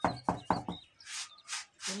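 A quick run of knocks, then three short scraping rasps, as wet concrete tile mix is worked by gloved hands in a tile mould.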